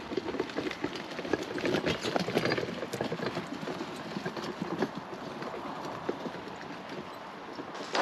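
A heavily loaded Gorilla garden dump cart being pulled over rough dirt ground, giving irregular rattling and knocking from the wheels and load, along with footsteps.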